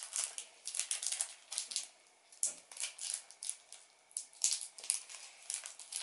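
Small plastic wrapper crinkling and crackling in irregular bursts with short pauses, twisted and pulled at by hand as it resists tearing open.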